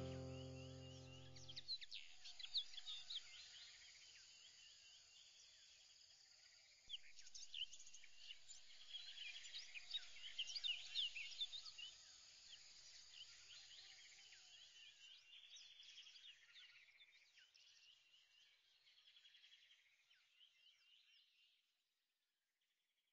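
A held musical chord ends about two seconds in. Then faint birdsong follows: many short chirps, busiest around eight to twelve seconds in, thinning out and stopping just before the end.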